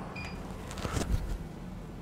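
Milling machine spindle running at slow speed with a low steady hum. Just after the start comes a short electronic beep as the digital readout is zeroed, then a few faint clicks about a second in.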